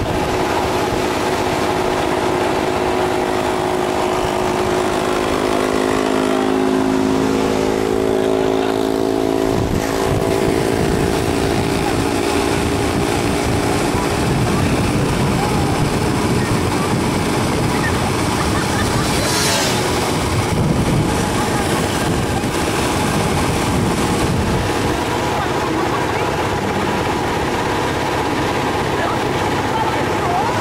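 Small motorcycle engines of sidecar tricycles running at road speed, with wind and road noise from a moving vehicle. The engine drone is steady, its pitch shifting between about six and ten seconds in.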